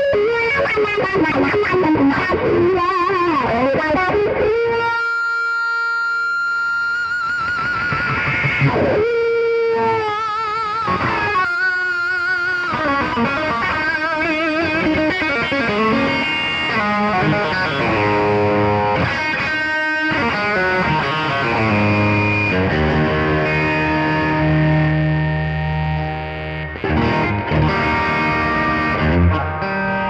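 Overdriven electric guitar improvising a lead on a 1959 Fender Stratocaster, through a 1960s Vox wah and an overdrive pedal. Fast runs and bends give way to held notes with wide vibrato, then lower held notes in the second half.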